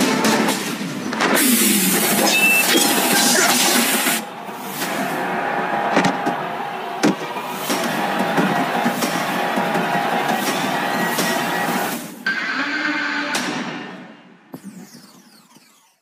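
Soundtrack of an animated superhero fight: dramatic music with hit and crash effects, fading away near the end.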